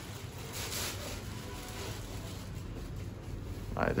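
Faint rustling of a plastic bag and handling noise as a loudspeaker cabinet is lifted out of its cardboard box. A man starts speaking just before the end.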